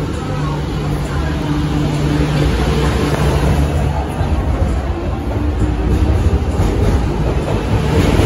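MTR Q-Train electric multiple unit pulling out of the station and gathering speed past the platform. A steady low hum in the first couple of seconds gives way to a rumble of wheels and running gear that grows louder as the cars go by.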